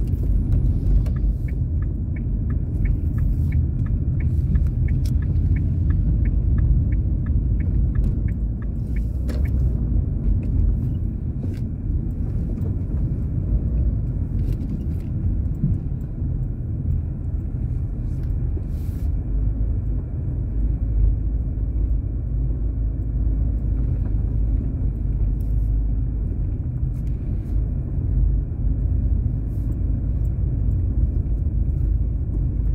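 Steady low rumble of a car's engine and tyres heard from inside the cabin while it drives at low speed. A fast, regular ticking runs through the first nine seconds or so.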